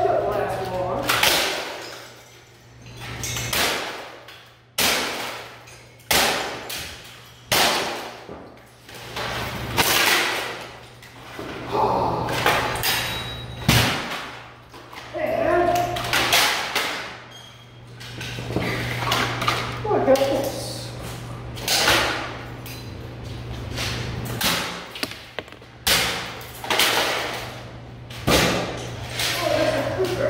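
A plastic printer being smashed by hand: repeated hard thuds and cracks, about twenty strikes, roughly one every second or two, some with a short ring, over a steady low hum.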